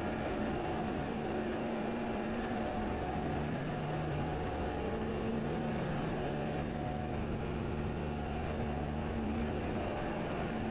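Steady mechanical hum of industrial plant machinery, with a few low steady tones that come and go.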